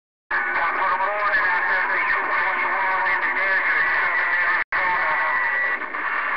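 A distant station's transmission received on a Galaxy CB radio: a voice garbled and buried in heavy static, cutting out briefly about two-thirds of the way through.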